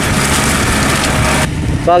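Yanmar tractor's diesel engine running steadily as its cage-wheel rollers churn through paddy mud, with a dense hiss over the engine note; the sound changes abruptly about one and a half seconds in, and a man's voice starts near the end.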